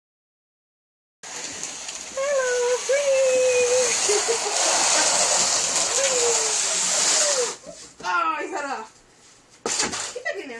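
A cardboard box dragged across a parquet wood floor with a cat riding in it, a loud continuous scraping hiss that starts about a second in and stops at about seven and a half seconds. A person's voice calls out a few held notes over the scraping and makes short vocal sounds just after it stops.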